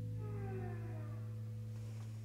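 The band's last chord ringing out as a low held note. About a quarter second in, a pedal steel guitar slides downward in pitch over it in several parallel falling tones.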